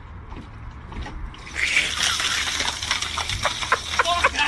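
Water gushing out of a plastic downpipe and splashing, starting suddenly about one and a half seconds in and running on loudly.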